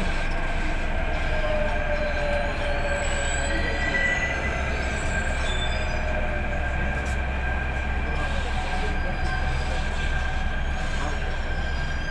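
Delhi Metro train running, heard from inside the carriage: a steady low rumble with a thin, steady high-pitched whine over it.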